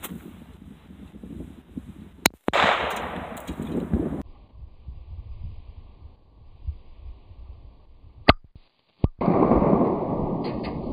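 A single pistol shot, a Glock 21 firing 230-grain .45 ACP ball, about eight seconds in. It is followed by a moment's dropout and then a loud rush of noise.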